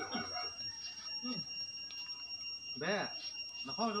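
Men's voices talking and calling out, over a faint steady high-pitched tone.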